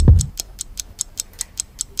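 Clock-ticking sound effect: quick, even ticks, about five a second, under an on-screen countdown. Loud background music cuts off just after the start.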